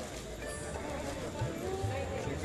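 Music with a voice singing: held notes that waver and glide, over a steady low hum.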